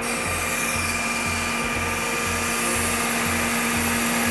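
Boom hydraulics of a Terex XT Pro 60 bucket truck running as the lower boom folds: a steady hiss of fluid through the control valves, with a steady low whine.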